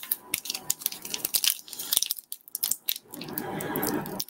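Pokemon trading cards and their packaging being handled and set down: a run of quick crackles and small clicks, pausing about halfway through before starting again.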